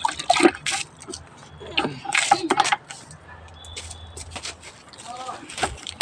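Water sloshing and splashing in a plastic bucket, with scattered knocks and handling noises from the bucket; the noisiest splashes come about two seconds in.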